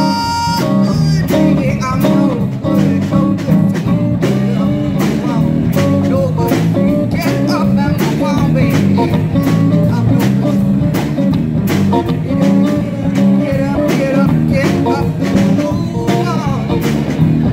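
Live band playing: drum kit keeping a steady beat under electric guitar and bass guitar. A woman's long sung note ends about half a second in, and the band plays on.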